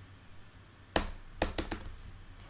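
Clicks from a MacBook Pro being worked by hand as a folder is being deleted: one sharp click about a second in, then four quicker, quieter clicks.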